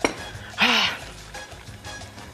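A single sharp clack of cookware at the stove, then a short wordless vocal sound about half a second later, with background music underneath.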